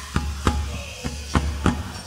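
Percussion beat keeping time in the pause between sung lines of a folk sea song: about five sharp hits over a low steady hum.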